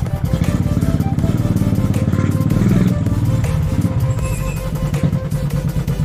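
Royal Enfield single-cylinder motorcycle engine running at low revs with an even, rapid pulse as the bike rolls slowly to a stop. Music plays faintly underneath.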